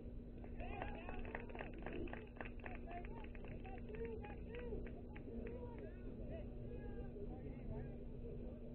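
Indistinct voices of players calling out across a baseball field, busiest in the first half, over a constant low rumble and a steady low hum.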